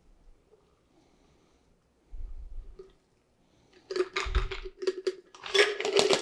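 A low thump, then from about four seconds in two bursts of metal clinking and rattling over a ringing note: a metal cocktail shaker tin and strainers knocking together while the last of a shaken cocktail is double-strained into a glass.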